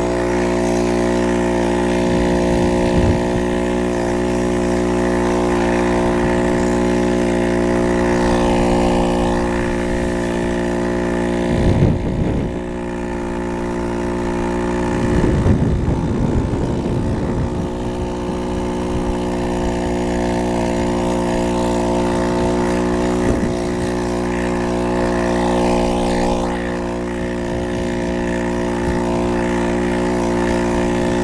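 McCulloch Pro Mac 610 chainsaw's two-stroke engine running steadily at high speed, driving a bicycle through a friction roller on the tyre. There is a short rumble about twelve seconds in and a longer one around sixteen seconds.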